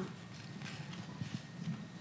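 Faint room tone with a few soft knocks, typical of a handheld microphone being handled just before someone checks whether it is on.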